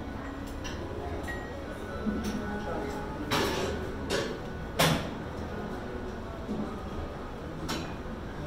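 Gym background of distant voices and music, broken by a few sharp metallic clanks, the loudest about three and a half and five seconds in.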